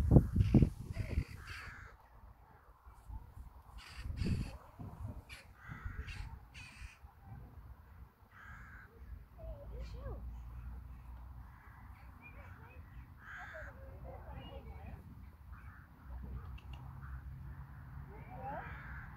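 Crows cawing in the background, a short harsh call every few seconds. There is a low rumble of wind on the microphone throughout, with loud low thumps at the start and about four seconds in.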